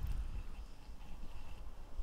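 Faint low rumble of a person shifting in a chair and handling things, with no distinct knocks.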